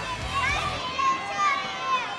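Children calling out and shouting in high voices in an arena crowd. A low background beat drops out just under a second in.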